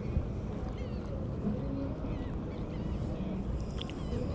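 A steady low rumble, with a few faint high chirps in the first half and again around the middle.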